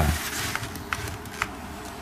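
A lull in studio speech: low background room noise with a few faint small clicks.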